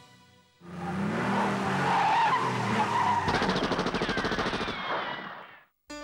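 Cartoon action sound effects: a car speeding with tyres screeching, and a rapid burst of machine-gun fire from about three seconds in, all fading out near the end.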